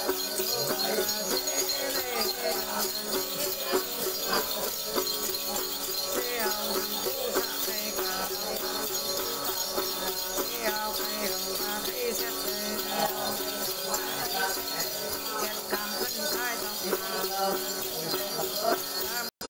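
Tày–Nùng Then ritual music: a woman singing to a plucked đàn tính long-necked lute, with a cluster of small jingle bells shaken continuously.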